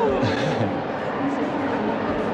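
Steady background hubbub of a crowd of visitors talking in a large exhibition hall.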